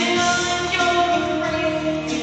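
Karaoke: a song playing through a karaoke machine, with sung vocals over the backing music.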